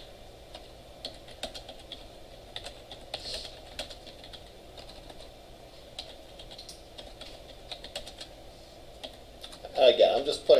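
Typing on a computer keyboard: irregular key clicks coming in short runs, over a steady background hum. A man's voice starts near the end.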